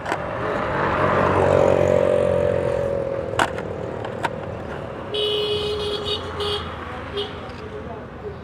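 A motor vehicle passes close by on the street, its engine note falling slowly in pitch as it goes. About five seconds in, a vehicle horn sounds twice in quick succession, then gives a short toot.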